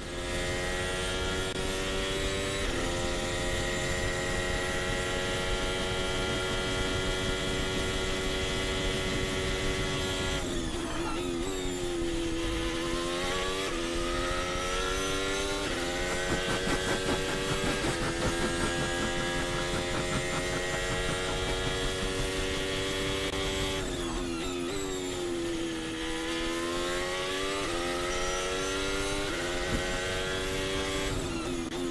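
Formula One car engine on an onboard lap of the Circuit de Barcelona-Catalunya, held at high revs with short steps in pitch at each upshift. About ten seconds in it drops hard through the gears under braking and climbs back up through the gears, and it does so again about twenty-four seconds in.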